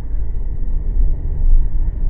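Steady low rumble of a car on the move, road and engine noise heard from inside the cabin.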